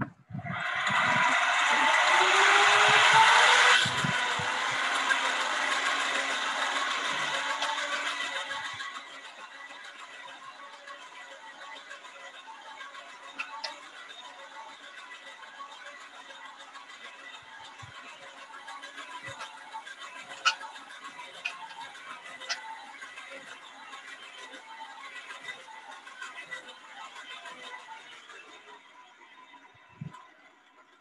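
Hand-cranked blower on a coal forge being turned, with a whine that rises in pitch as it spins up and air rushing into the coal fire, loud for the first few seconds, then settling to a steadier, quieter hum and hiss with a few sharp ticks.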